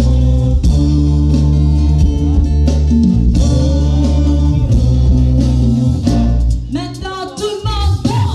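Live Afro-pop band playing: acoustic guitar, electric bass, drum kit, congas and keyboard, with a woman singing. Near the end the bass and drums drop away, leaving the voice over lighter accompaniment.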